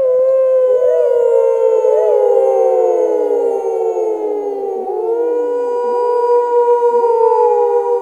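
Wolves howling as a pack: several long howls overlap, each slowly falling in pitch, and new howls rise in about five seconds in.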